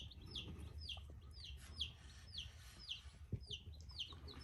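Day-old baby chicks peeping, a faint steady string of short, high calls that each fall in pitch, about two to three a second.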